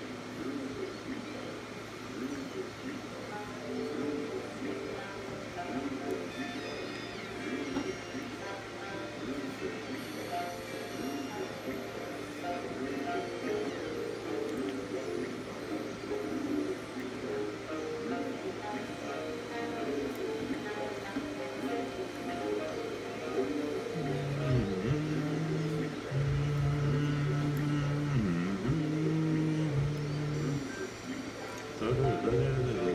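Electronic keyboard played with one hand: scattered single notes, then low held bass notes over the last several seconds, louder than the rest. A voice is faintly heard underneath.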